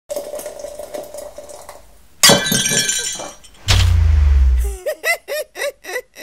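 Sound effects of a channel logo sting: a loud crash like breaking glass about two seconds in, then a deep booming hit, followed by a quick run of about five short rising chirps.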